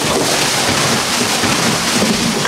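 A large cardboard box of small plastic zip bags tipped out onto the floor: a loud, steady rush of rustling, crinkling plastic as the bags pour out.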